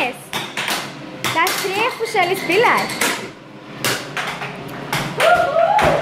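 A series of sharp knocks and taps at an uneven pace, with voices talking over them.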